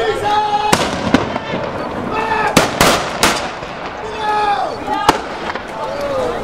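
Black-powder musket shots: a ragged series of sharp cracks, bunched between about two and a half and three and a half seconds in, with single shots before and near the end.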